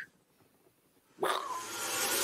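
Dead silence, then about a second in the opening sound effect of an outro sting begins: a sudden hit followed by a hiss that builds.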